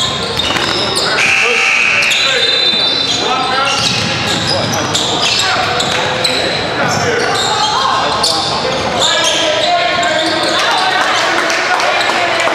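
Basketball being dribbled on a hardwood gym floor during a game, with repeated ball bounces and players' feet, under steady shouting and chatter from players and spectators, all echoing in a large gym hall.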